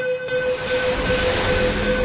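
A breakdown in a hardcore electronic track: a sustained droning tone with a wash of hiss over it and no kick drum. It holds steady at a moderate level.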